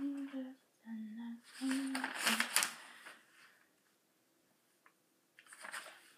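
A girl humming a few held notes of a tune, which stop about two and a half seconds in, with a short rustle of handled paper around then; after that it is nearly quiet, with a faint scratch or two near the end.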